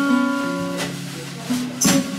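Slow blues played on an archtop guitar: a short fill of held, ringing notes between sung lines, with a sharp drum hit near the end.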